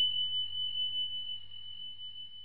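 The ring of a single high, pure chime sound effect, holding one steady pitch and slowly fading, with a faint low hum beneath.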